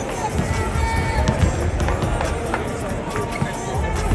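Music playing over the arena sound system, mixed with a crowd's chatter. A few short sharp knocks of basketballs bouncing on the hardwood court cut through it.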